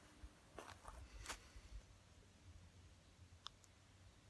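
Near silence, with a few faint mouth clicks from puffing on a tobacco pipe.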